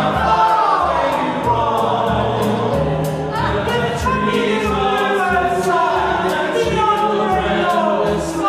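A men's chorus singing a Christmas novelty number with accompaniment, over sustained low notes and a steady beat.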